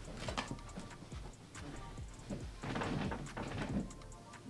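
Background music with a light ticking beat. Over it come a couple of thumps near the start, then about a second of rustling bedding near the end as someone climbs onto a bed.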